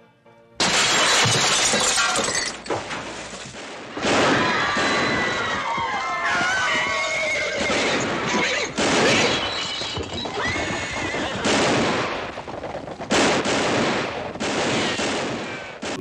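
Movie western soundtrack: a glass bottle smashing about half a second in, then horses neighing as riders charge off, under film-score music, with several further sharp loud hits later on.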